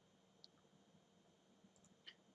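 Near silence, with a single faint computer mouse click about half a second in.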